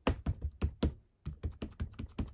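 Quick, irregular light taps and clicks of craft supplies being handled on a desktop, about four a second, as an ink pad is picked up.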